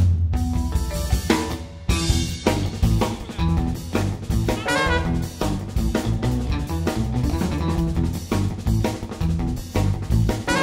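A live band playing an upbeat groove: drum kit with kick and snare, a driving electric bass line, and a horn phrase about halfway through.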